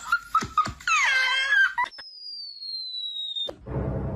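A few clicks and a short high-pitched animal cry that bends in pitch, then a long thin whistle tone that falls slowly and cuts off with a click. Music starts near the end.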